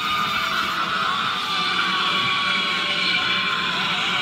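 A Halloween animatronic's recorded sound track playing loudly and steadily from its built-in speaker while the prop runs, heard as music.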